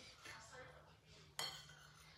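A fork clinks once against a bowl while food is picked up, a single sharp clink a little past halfway, over faint scraping of the utensil in the bowl.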